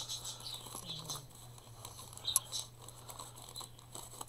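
Faint rustling and scuffing of a lined paper insert being handled and pushed back into a paper pocket, with a small sharp tick a little past halfway.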